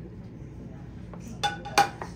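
Two clinks against a glass mixing bowl about a second and a half in, the second louder, each with a short ring, as kitchenware knocks the bowl while the butter and flour are being mixed.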